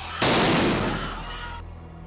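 A single loud blast goes off about a fifth of a second in, and its noise dies away over about a second. It is typical of a stun grenade or shot being fired during a police action against a crowd in a street.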